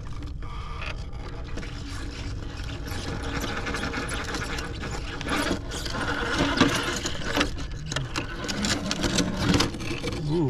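Redcat Ascent RC rock crawler's electric motor and geared drivetrain running under load as it climbs a rock crack, with its tires scraping and clicking against the rock. It gets louder and busier in the second half as the truck works higher up the crevice.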